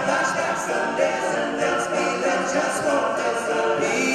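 Men's a cappella group singing in harmony, several voices holding and shifting chords together.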